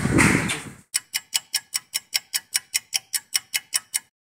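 A rapid, even ticking, about five sharp ticks a second, starting about a second in and keeping a steady pace, like a clock-tick sound effect.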